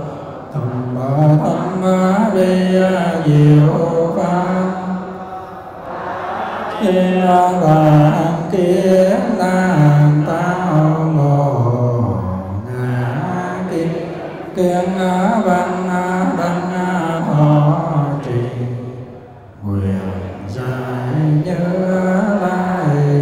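Buddhist monks and lay followers chanting a liturgy together in unison, the chant moving in phrases with short breaks between them.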